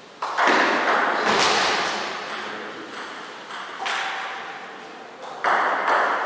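Table tennis ball struck back and forth in a rally, sharp hits of ball on rubber bats and table about once every half second to second, each ringing on in the echo of a bare hall. The hardest hits come just after the start and about five and a half seconds in.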